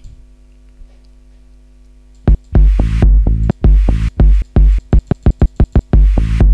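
Electronic dance track with a heavy kick drum, started about two seconds in. Near the end the beat breaks into a rapid run of short, choppy hits before the groove returns.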